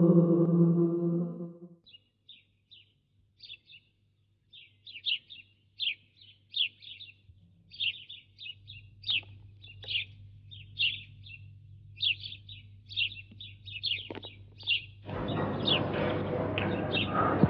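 Small birds chirping in quick, high, short calls, several a second, after a sung chant dies away in the first two seconds. A steady rushing background noise comes in near the end.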